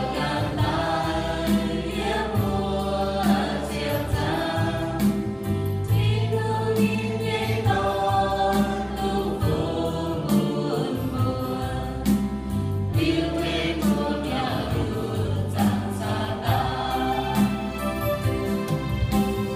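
A mixed group of men and women singing a hymn together in the Iu-Mien language, with instrumental accompaniment holding low sustained notes under the voices.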